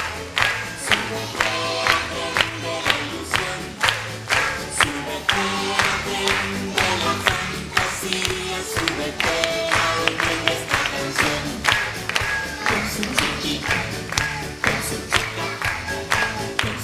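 Upbeat song with a steady beat of about two strokes a second, sung by a group of young children.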